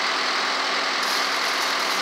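A work truck's engine idling steadily, an unchanging drone.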